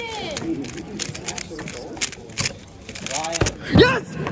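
Quick clicking of a 3x3 speedcube's layers being turned through a solve of just under four seconds, ending in a loud high-pitched excited cry as the cube is set down.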